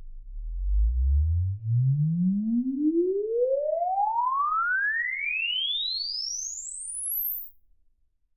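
Sine-wave sweep played through a NEXO loudspeaker into a room. The tone rises steadily from a deep hum to a very high whistle over about seven and a half seconds, then stops. It is the test signal for recording the room's impulse response for a convolution reverb.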